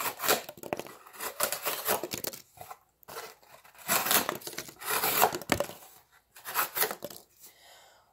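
The 7Cr17 steel blade of a Gerber Asada folding knife slicing through cardboard, in three runs of cuts with short pauses between them.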